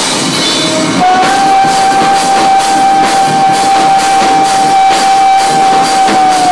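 Live rock band playing loud, drum kit and guitars, with one high note held steady from about a second in.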